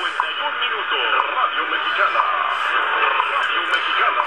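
Shortwave AM reception from an RTL-SDR receiver near 5 MHz, played over a computer speaker: a station's voice, thin and cut off above the treble, buried in steady hiss and static. It is an AM broadcast station coming in on the WWV frequency, which the operator takes for overload of the receiver, with the RF gain perhaps set too high.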